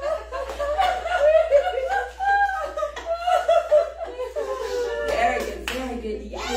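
A group of women laughing and chuckling together, several voices overlapping: deliberate laughter-yoga laughing, as if at a funny phone call, rather than laughter at a real joke. A few hand claps come near the end.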